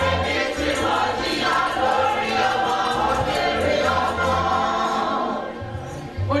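Live gospel praise: a group of voices singing together over a band with a repeating bass line, easing off briefly near the end.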